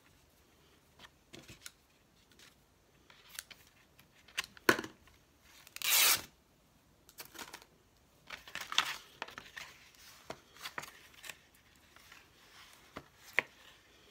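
Craft materials being handled on a work table: scattered light taps and rustles of fabric and paper, with one loud, short tearing sound about six seconds in and a run of rustling soon after.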